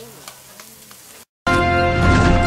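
Faint sizzling of food frying, with a few light pats of hands shaping pupusa dough. After about a second and a half it cuts off abruptly, and loud music takes over.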